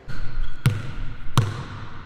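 A basketball bounced twice on a hardwood court floor, two thuds under a second apart, each ringing on in the echo of a large hall.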